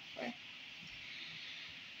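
A person's brief, low, falling hum or grunt about a quarter-second in, over a faint steady hiss of room noise.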